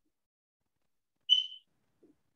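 A single short high-pitched whistle-like tone, about a third of a second long, sounding once about a second and a half in, with near silence around it.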